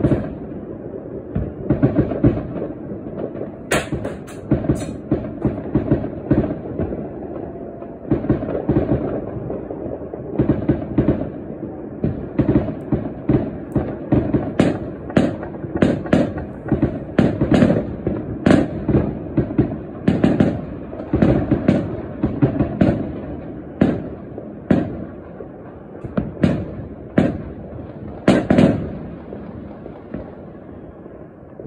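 Fireworks and firecrackers going off in a near-continuous barrage: overlapping bangs and pops, several a second, with sharper cracks standing out now and then.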